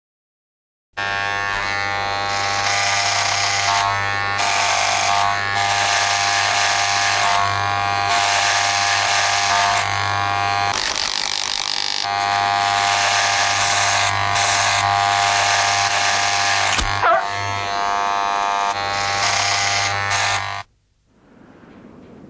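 Loud, steady electronic buzzing drone of many held tones, starting about a second in, breaking off briefly around the middle and stopping shortly before the end.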